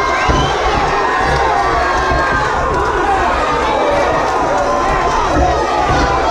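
Boxing crowd cheering and shouting during a bout, many voices yelling over one another at a steady, loud level.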